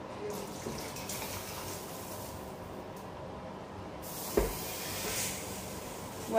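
Stew sauce being spooned and poured from the pot into a serving dish, a soft liquid sound that grows stronger about four seconds in, with one sharp knock of the utensil against the pot shortly after.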